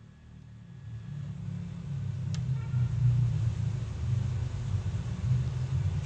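A low rumble that builds over the first two seconds and then holds, with a short faint chirp a little over two seconds in.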